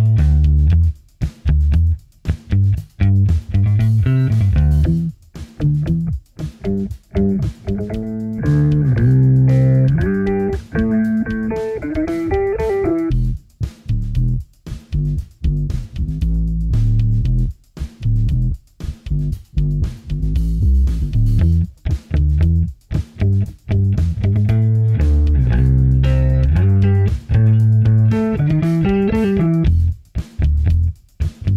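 Electric bass guitar played through a Boss OC-5 octave pedal with the effect on. It plays a choppy, staccato riff of short, thick low notes with brief gaps between them, and climbs into higher phrases twice: once in the middle and again near the end.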